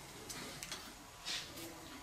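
A few faint, light clicks and a soft handling sound, about a second in, of hands working silver stock at a small hand-cranked rolling mill.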